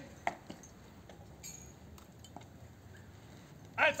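Quiet outdoor ambience of a crowd standing still, broken by a few faint clicks and knocks. Near the end a loud shouted command cuts in.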